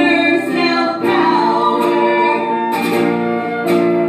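Live acoustic folk music: a man singing with acoustic guitar accompaniment, and a flute playing alongside.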